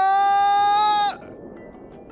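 A man's long, drawn-out "whoa" that climbs in pitch and is then held on one note, cutting off suddenly about a second in; a faint soundtrack underneath follows.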